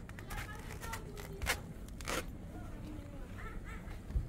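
Faint voices talking, with a few sharp clicks or rustles, the two loudest about a second and a half and two seconds in.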